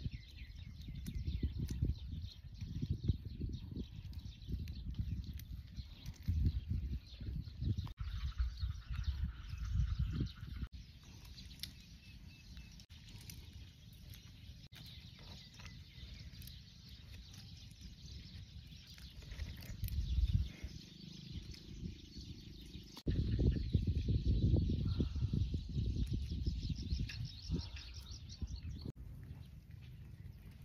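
Outdoor field ambience: wind rumbling on the microphone in irregular gusts, heaviest near the start and again in the last few seconds, over faint steady bird chirping.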